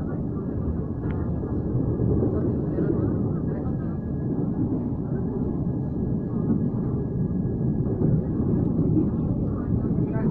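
Passenger train running over a steel rail bridge, heard from inside the carriage: a steady low rumble with a faint constant high whine.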